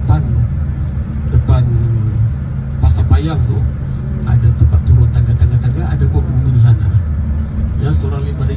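Bus engine and road rumble heard inside the passenger cabin, a steady deep drone under a man talking over the bus's microphone.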